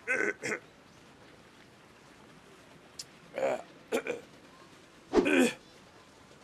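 Short wordless vocal sounds from a voice, in brief bursts: two near the start, a few more around the middle, and a louder, longer one near the end, with a single sharp click about three seconds in.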